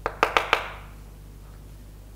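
Four quick taps on a chalkboard within about half a second, each with a short ringing tail, followed by quiet room tone.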